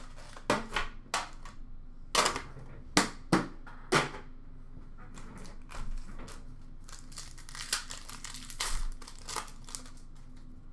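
Foil trading-card pack wrappers crinkling and being handled and torn open, with several sharp crackles in the first four seconds and denser rustling near the end.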